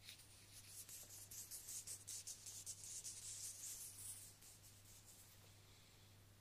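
Soft, rapid rubbing and brushing of bare hands close to a binaural microphone. It comes as a dense run of short, hissing strokes that fades out about five seconds in.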